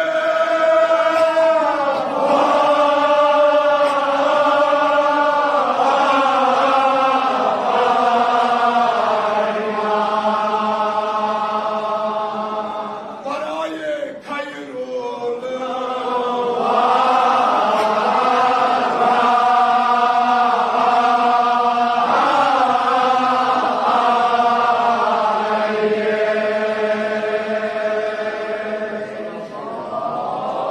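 Kashmiri marsiya (religious elegy) chanted in long, drawn-out held notes that step from pitch to pitch. There is a brief pause about halfway through before the chanting resumes.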